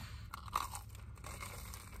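Crunchy bite into a potato-cube-crusted Korean corn dog, a few crackling crunches about half a second in, then quieter chewing of the crispy fried potato coating.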